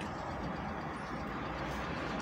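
Steady low hum of a car heard from inside its cabin.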